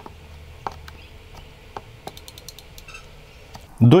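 Sparse, quiet clicks from the front-panel controls of a FNIRSI 1014D digital oscilloscope as its encoder knob and buttons are worked to set the signal generator's frequency, over a faint low hum.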